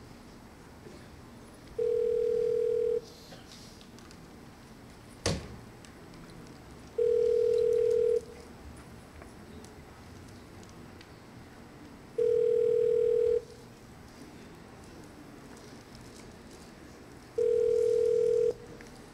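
Telephone ringback tone on a landline call: four identical steady beeps about five seconds apart, the call ringing at the far end and not yet answered. A single sharp knock about five seconds in.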